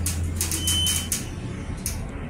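Mongrain hydraulic elevator's pump motor humming low and steady, then cutting off about a second in as the car reaches street level. A short high beep sounds just before the hum stops, over faint rapid ticking.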